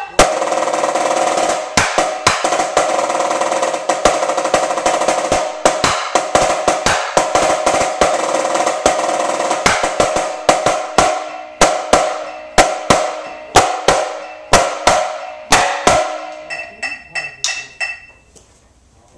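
Marching snare drum played with sticks: a continuous roll studded with accented strokes for about ten seconds, then separate loud accents with short rolls between them, thinning to lighter strokes near the end.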